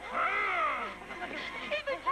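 A long wailing cry that rises and then falls in pitch over about a second, followed by a few shorter, choppy cries.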